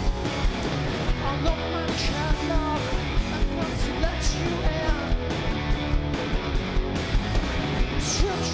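Live rock band playing electric guitars, bass and drums with a steady beat, and a lead vocal sung over it.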